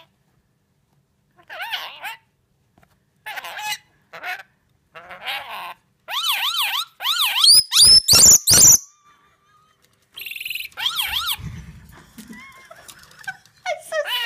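Scaly-breasted lorikeet imitating a siren: short bouts of a whistled wail wavering up and down, with the longest and loudest run in the middle, which ends in a few steep rising sweeps.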